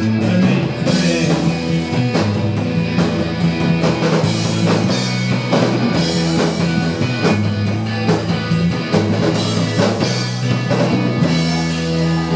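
Live rock band playing: electric guitar over bass guitar and a drum kit keeping a steady beat.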